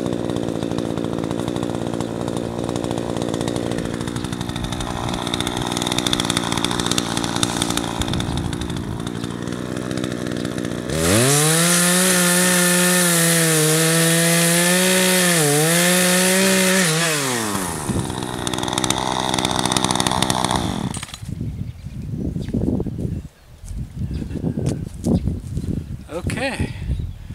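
Two-stroke gas chainsaw idling, then revved to full throttle about eleven seconds in to cut through sapling trees, its pitch dipping briefly as the chain bites under load. It drops back to idle for a few seconds and then stops, followed by brush rustling and crackling as the cut saplings are handled. The chain has just been retightened after stretching.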